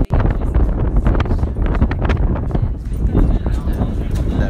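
Strong wind buffeting a phone's microphone: a loud, gusty rumble that swamps everything else.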